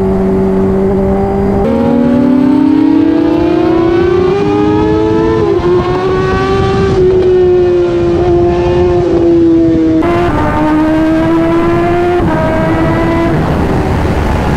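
Kawasaki superbike's inline-four engine under way at speed. Its note climbs steadily for the first few seconds as it accelerates, then runs at near-steady high revs with a few brief dips and steps.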